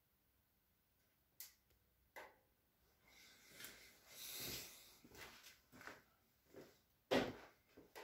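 Quiet room with a few faint clicks and a soft rustle around the middle, then a louder knock near the end: incidental handling noise.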